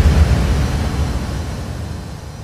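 A deep, low rumble fading away steadily, the decaying tail of the electronic sound effect on an animated credits sting.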